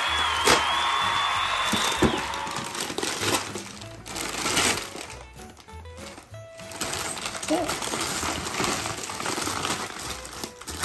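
Gift wrapping paper crinkling and tearing as a present is unwrapped by hand, in uneven rustling strokes from about three seconds in. Background music with held tones plays over the first couple of seconds.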